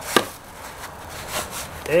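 A hammer strikes once sharply, driving a plastic-capped nail through a foam pool noodle into a plywood board, and a lighter knock follows about a second later.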